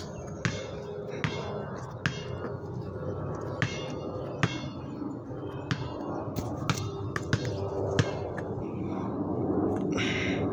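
A basketball dribbled on a concrete court, about a dozen bounces at an uneven pace, each a sharp smack with a short ring from the inflated ball, over a steady background hum.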